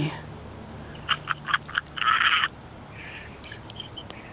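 Excited, breathy whispered laughter in a quick run of short bursts about a second in, then a longer hissing breath or whispered exclamation around two seconds.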